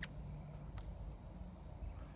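Faint outdoor background: a low steady rumble with two brief faint ticks, one at the start and one just under a second in.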